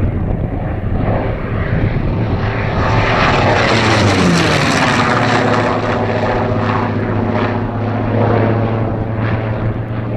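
F4U-4 Corsair's Pratt & Whitney R-2800 Double Wasp 18-cylinder radial engine and propeller at power in a close pass. It is loudest about four seconds in, where its pitch drops as the plane goes by, then runs on at a steadier, lower pitch as it pulls away.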